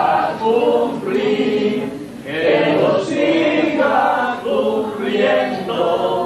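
A group of voices singing together in a slow, chant-like devotional hymn, in sustained phrases with a short breath break about two seconds in.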